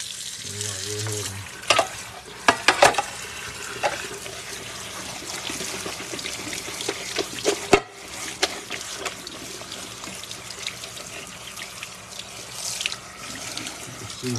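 Kitchen tap running steadily, water splashing onto cut broccoli in a small metal pot in the sink as it is rinsed. A few sharp clanks of the pot are heard, most of them about two to three seconds in and one near the middle.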